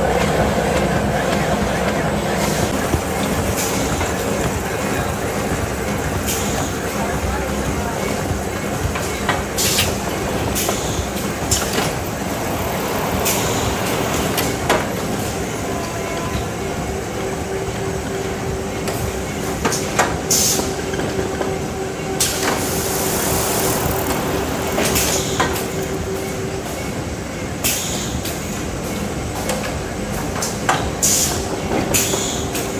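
Hardboard production line machinery running: a steady mechanical din with a faint hum, broken by frequent irregular sharp clicks and knocks.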